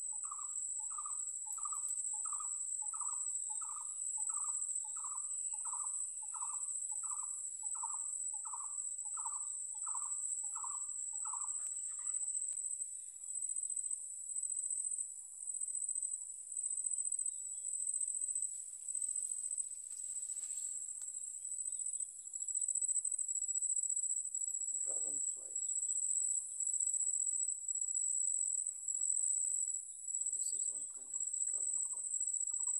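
Steady, high-pitched insect trill from crickets or similar singing insects. For the first twelve seconds or so it carries a short call repeated about one and a half times a second, then that call stops.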